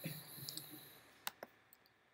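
Two quick, sharp computer mouse clicks a little over a second in, about a fifth of a second apart, faint against the quiet room.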